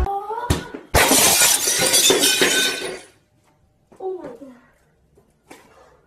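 Glass shattering about a second in, apparently struck by a kicked football: a sudden crash followed by about two seconds of breaking and falling glass. Near-silence follows, broken by a short voice around four seconds in.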